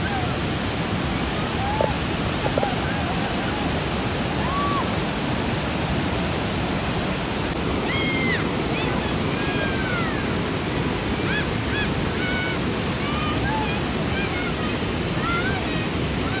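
A loud, steady rushing noise runs throughout. Faint, distant voices call out now and then, most of them in the second half.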